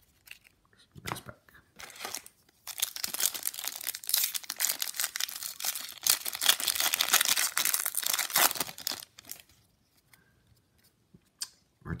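Foil wrapper of a baseball card pack being torn open and crinkled by hand. A few light crackles come first, then about six seconds of dense tearing and crinkling that stops near the end.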